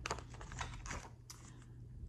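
Page of a hardcover picture book being turned by hand: a few faint paper rustles and flicks.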